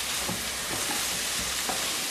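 Chopped onion, carrot and celery frying in oil in a multicooker bowl: a steady sizzle, with a few faint knocks as chopped tomato is added to the pot.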